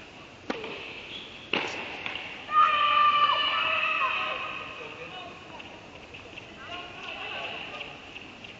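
Two sharp knocks of a tennis ball about a second apart, then a loud, high-pitched shout from a player that is held and then falls away, echoing in the indoor tennis hall.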